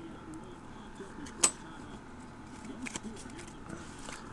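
A single sharp tap about a second and a half in, then a few softer ticks near three seconds, over faint background voices.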